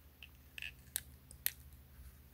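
A few faint, sharp plastic clicks and taps from a small handheld gimbal camera being handled in the fingers, the loudest about one and one and a half seconds in.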